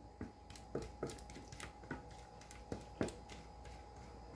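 Soft, irregular taps and scrapes of a spatula against a clear plastic blender jar as thick cake batter is scraped out of it into a pan, about six faint knocks in all.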